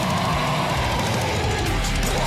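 Death metal song playing: a dense, steady wall of heavily distorted guitars and drums.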